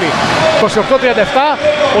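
Male sports commentator's voice calling out the score, over a steady background of arena crowd noise.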